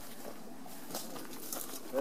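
Faint rustling of leaves and branches brushing past as someone walks through pomegranate trees, with a few soft ticks of twigs, and a short voice sound at the very end.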